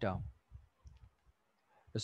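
A few faint, sparse clicks from an input device as handwriting is entered on a digital whiteboard.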